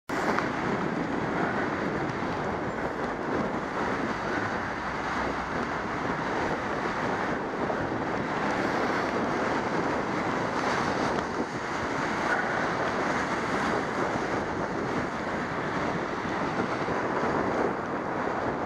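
Steady rushing wind and road noise picked up by a camera mounted on a moving bicycle, riding on a wet path.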